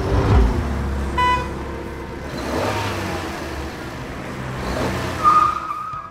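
Car engine sound effect: an engine starts with a deep rumble and runs for a few seconds, with a short beep about a second in and a held higher tone near the end.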